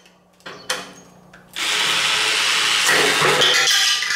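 Battery-powered Kobalt toy reciprocating saw starting up about one and a half seconds in and running steadily as its plastic blade works against a block of wood, after a couple of short clicks.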